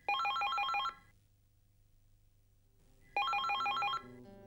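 Telephone ringing with an electronic warbling ring: two rings about three seconds apart, each a rapid trill alternating between two pitches.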